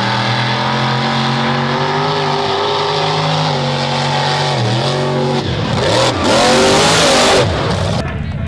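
Mud truck's engine at full throttle, its pitch held high and steady, dipping briefly about four and a half seconds in and then revving up again. A loud rushing hiss for about a second near the end.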